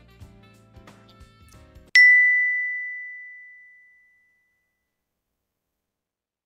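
Faint music for about two seconds, cut off by a single loud, high bell-like ding that rings and fades away over about two seconds.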